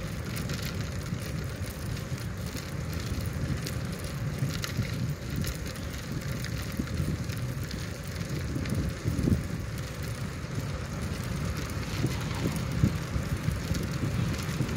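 Steady low wind rumble on the microphone while moving along a wet asphalt path, with a faint hiss and scattered small clicks throughout.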